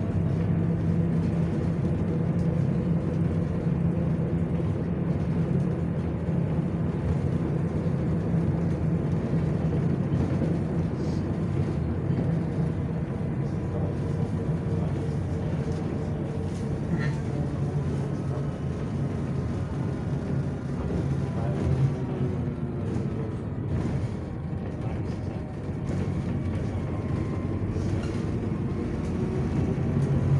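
A city bus driving along a street, heard from inside the passenger cabin: a steady low engine drone with road and tyre noise, easing off slightly for a few seconds in the latter half.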